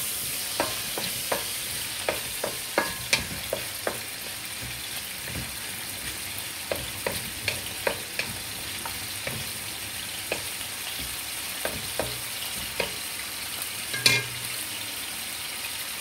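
Pieces of heart and kidney sizzling in oil in an aluminium wok while a wooden spatula stirs them. The spatula knocks and scrapes on the pan often, several times a second at first and more sparsely later, with one louder knock near the end.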